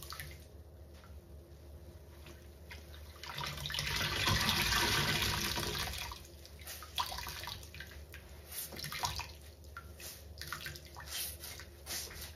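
Wet, sudsy sponge squeezed and wrung in soapy water. A louder rush of water comes about four seconds in, then smaller squelches and drips.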